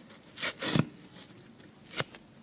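Dry kitchen sponge's soft foam side being ripped apart by hand. There is a double tearing rip about half a second in and a shorter rip near the end.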